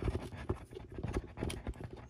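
Scratching and irregular small clicks as a screw threaded into the dust cap of a vintage Sansui speaker cone is twisted and tugged to pull the cap up bit by bit.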